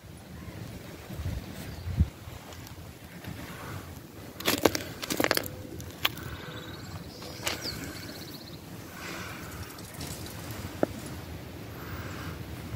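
Stones and gravel knocking and crunching in a few scattered sharp clicks, with a short cluster of them about halfway through.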